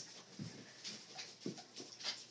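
Faint, irregular taps and shuffles of a person and a dog moving across a wooden floor, a few soft knocks spaced about half a second apart.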